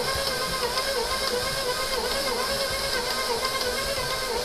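A 6-quart bowl-lift stand mixer running at speed with its flat beater working a stiff cream cheese and flour dough. Its motor whine holds steady, but the pitch dips about twice a second as the beater drags through the dough on each turn.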